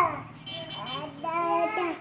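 Toddler vocalizing in a high sing-song voice: a falling call at the start, then a longer held, wavering note in the second half. A low steady hum runs underneath.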